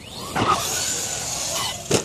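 Electric motor of a JLB Cheetah RC car whining as the car accelerates. The whine starts a moment in, rises, holds steady and cuts off just before the end, followed by a short click.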